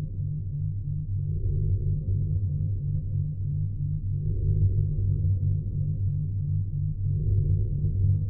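Low, dark background music: a fast, even pulsing bass note, with a swell that returns every three seconds or so.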